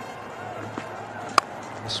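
A cricket bat striking the ball, a single sharp crack about one and a half seconds in, over steady background noise.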